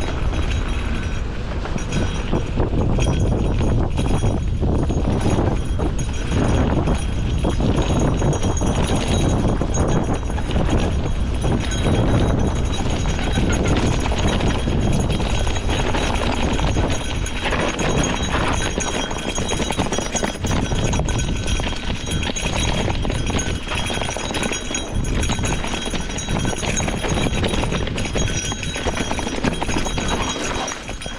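Gravel bike rolling fast down a rocky dirt singletrack: tyres crunching over dirt and stones, with a continuous rattle and clatter of knocks from the bike jolting over the rough ground.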